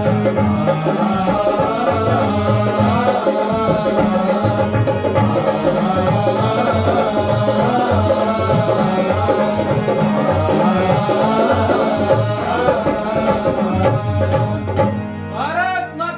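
Men singing a Hindi patriotic song in chorus, accompanied by tabla, dholak, harmonium and acoustic guitar, with a steady drum rhythm. The accompaniment breaks off about fifteen seconds in, leaving a lone voice.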